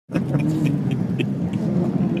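Motor vehicle engines running steadily: a constant low hum.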